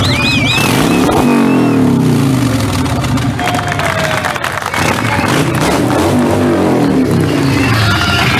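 Harley-Davidson touring motorcycle's V-twin engine revving up and dropping back several times. A crowd whistles and cheers near the start.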